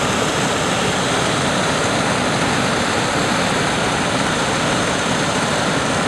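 River water pouring over a long, low overflow dam, a loud steady rush of falling water.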